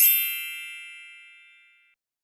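A bright chime sound effect, struck once and ringing out with several high tones that fade away over nearly two seconds.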